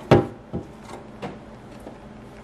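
A clear plastic dough tub knocking as it is handled and lifted off a mass of bread dough on a countertop: one loud knock near the start, then two lighter ones.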